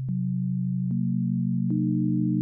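Synthesized sine-tone partials, non-harmonic to each other, being stacked one at a time in an additive-synthesis demonstration. A steady low tone is joined by a higher partial just after the start, another about a second in and another near the end, each entering with a small click and thickening the sound.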